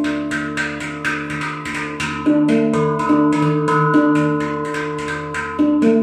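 Handpan (steel hang drum) played with the fingers: a quick, even run of strikes, several a second, each note ringing on and overlapping the next, with heavier accents about two seconds in and near the end.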